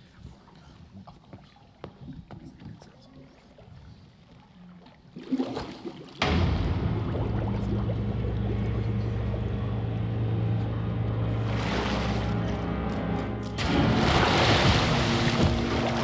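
Dramatic music score from an animated episode's soundtrack. It begins after about five seconds of faint, quiet sound with a swell, then settles into a steady low droning score. A louder rushing noise comes in near the end.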